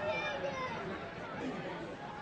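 Indistinct chatter of people talking, with overlapping voices and no clear words.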